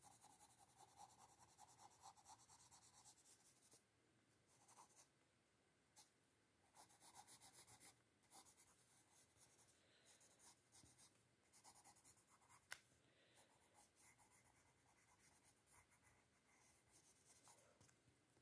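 Faint pencil strokes scratching on paper while detail is drawn into a picture: a quick, steady run of short strokes at first, then short separate runs with pauses between them, and one sharper tick about two-thirds of the way through.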